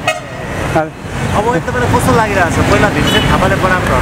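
Busy street traffic: a bus's engine rumble grows louder from about a second in as it passes close by. A vehicle horn toots briefly, and voices mix in.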